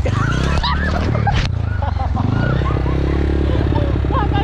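Small motorcycle engine running on a dirt trail, its note falling and then climbing again about two seconds in. One sharp knock comes about a second and a half in.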